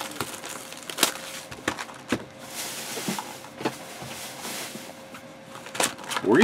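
Cardboard trading-card hobby boxes being handled on a tabletop: several light knocks and taps, with a brief sliding rustle a few seconds in. A faint steady hum runs underneath.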